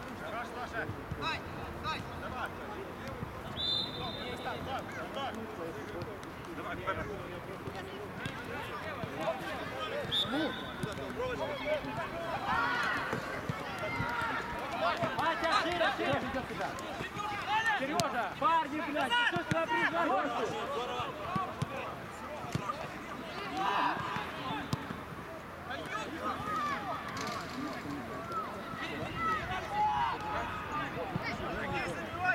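Footballers' voices shouting and calling to each other across the pitch during play, busiest about halfway through. Two brief high-pitched tones sound early on.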